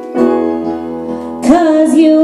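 Live acoustic ballad: a piano and acoustic guitar chord struck and ringing, then a woman's voice coming in on a sustained sung note with vibrato about a second and a half in.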